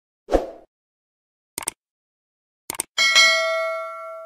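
Sound effects of a YouTube subscribe-button animation. A short pop comes first, then a single mouse click and a quick double click. About three seconds in, a notification-bell ding rings out in several tones and slowly fades.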